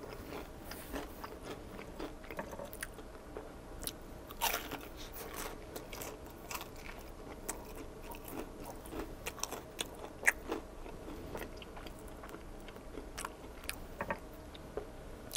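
Close-up chewing of a bite of crunchy Korean-style corn dog with a coating of panko crumbs and fry chunks: a run of soft crunches and mouth clicks, with a louder crunch about four and a half seconds in.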